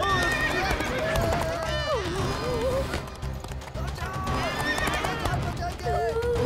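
A horse neighing and hooves clip-clopping, over dramatic background music, with frightened people crying out.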